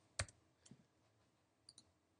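Keystrokes on a computer keyboard in a quiet room: one sharp click about a fifth of a second in, a fainter one shortly after, and a quick pair of light clicks near the end.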